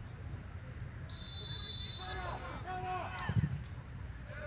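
Referee's whistle: one steady blast of about a second, starting about a second in, over field-level crowd noise, followed by faint distant shouts from players.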